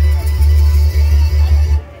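Recorded music with heavy bass and guitar, played loudly over a PA loudspeaker; it stops abruptly near the end.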